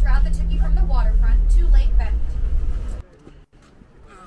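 Tour bus engine running with a steady low rumble heard from inside the cabin. It stops abruptly about three seconds in, leaving only faint outdoor sound.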